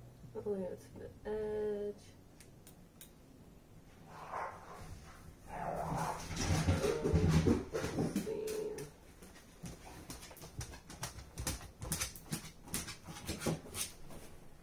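Fabric scissors snipping through sweatpant fabric, a run of quick, irregular clicks in the last few seconds. Earlier there are two short, high whines, then the loudest part: a stretch of low, muffled voice-like sounds.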